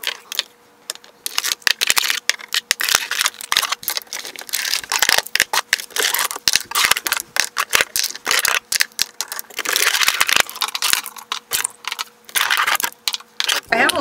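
Small glass and plastic skincare bottles clinking and clattering against each other as they are lifted out of a drawer and set down: a rapid, irregular run of clicks and knocks.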